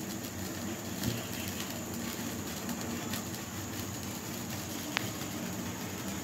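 Egg frying in a wok on a gas hob: a steady hiss from the frying and the burner flame, with one sharp tick about five seconds in.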